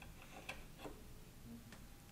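A few faint, scattered clicks of a USB plug being pushed and seated into a Raspberry Pi's USB port by hand.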